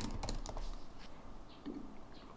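A few quiet keystrokes on a computer keyboard, mostly in the first second.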